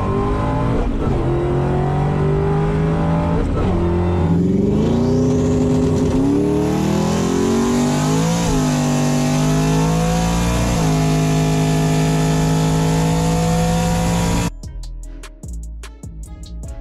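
Ford Mustang V8 at full throttle heard from inside the cabin, its note climbing and then dropping several times as it revs through the gears of the manual gearbox. Near the end it cuts off abruptly and guitar music takes over.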